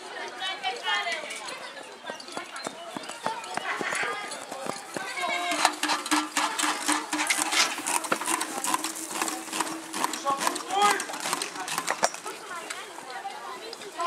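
Several voices calling out and talking, busier and louder from about five seconds in, with scattered sharp knocks and clatters among them.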